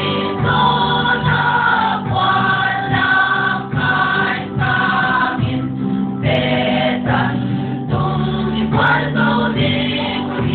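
A church choir singing a Christian praise song in Paite, mixed voices holding notes over a steady musical backing.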